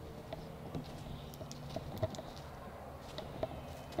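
Soft, irregular footsteps and scuffs on dirt ground with a few handling taps, over a faint steady low hum.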